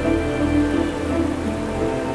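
Calm ambient music with soft held notes, over a steady hiss of rushing water.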